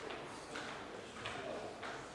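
Footsteps on a hard floor: three sharp steps about two-thirds of a second apart.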